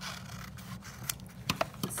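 Scissors cutting a curve through a sheet of paper: a continuous rasping cut, with several sharp snips of the blades in the second half.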